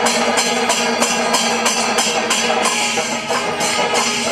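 Processional drum ensemble playing a fast, driving rhythm, with metal hand cymbals clashing about three times a second over a steady held tone.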